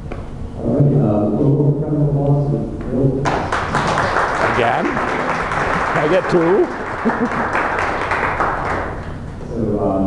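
Audience applauding for about six seconds, starting suddenly about three seconds in and dying away near the end, with voices talking before and under it.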